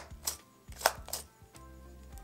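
Hard plastic clicks from a jumbo push-pop candy tube being handled, cap and push-up sleeve worked by hand: three sharp clicks, the loudest a little under a second in.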